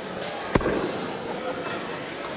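A single steel-tipped dart striking a bristle dartboard: one short, sharp thud about half a second in.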